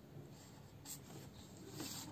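Felt-tip marker drawing lines on paper along a plastic ruler: a faint scratching of the pen tip.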